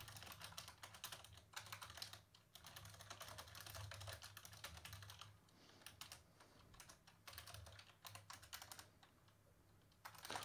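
Faint typing on a computer keyboard: quick runs of keystrokes, broken by short pauses in the second half.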